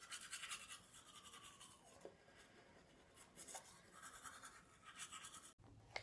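Faint toothbrush scrubbing teeth: quick, even brushing strokes that stop abruptly near the end.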